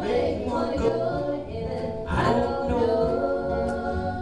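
Live gospel trio singing together, male and female voices holding sung notes, backed by a Martin HD-28 acoustic guitar and a Peavey six-string electric bass.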